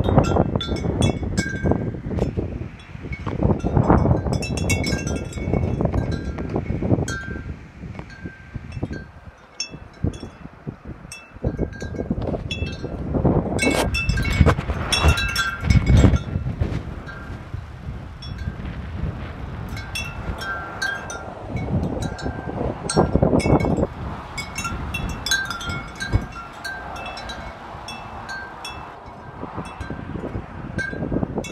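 Wind chimes ringing irregularly as the wind swings them, a few clear notes at a time. Gusts of wind rumble heavily on the microphone, rising and falling, strongest about 14 to 16 seconds in.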